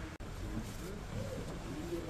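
Street noise with a low, steady rumble and indistinct voices of people talking in the background; the sound cuts out for a split second near the start.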